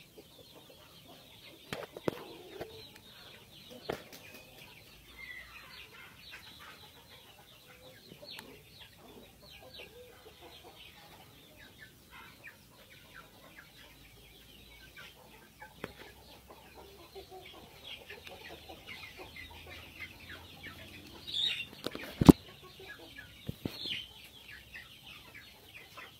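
Dong Tao chickens clucking on and off, with a few sharp knocks; the loudest knock comes near the end.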